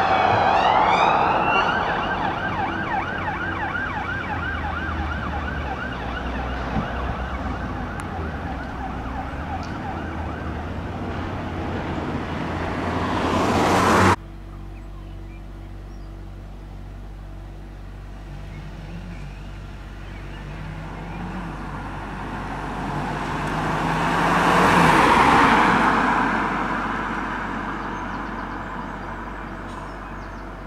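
Police BMW X5 siren wailing, then switching to a fast yelp that fades as the vehicle drives away. A broad vehicle noise rises until an abrupt cut about halfway through. Then a police Skoda Octavia estate pulls out and drives past, its engine and tyre noise swelling and fading with no siren.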